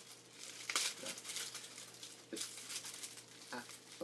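A small clear plastic baggie crinkling as it is handled, in irregular rustles, loudest about a second in and again a little past two seconds in.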